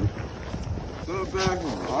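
Wind buffeting the microphone as a low rumble, with a person's voice breaking in briefly about halfway through and again near the end.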